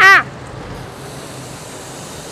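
Dekton DK-CWR2300FB electric pressure washer spraying snow foam through a foam-bottle attachment on its gun, set to the mist pattern: a steady hiss of spray that comes in about half a second in and holds even.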